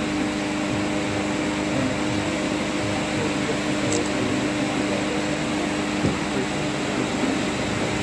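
Steady background hum and hiss, with a held low tone that cuts off with a click about six seconds in.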